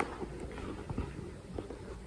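A quiet room with a few faint, soft knocks and taps, one right at the start and another about a second in.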